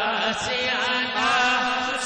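Male voice singing a naat into a microphone, holding a long wavering melodic line with no words, over a steady low drone.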